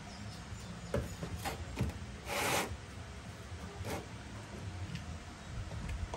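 A hand sanding block being handled against a car's filled rear body panel: scattered light knocks, with one brief rubbing stroke about two and a half seconds in.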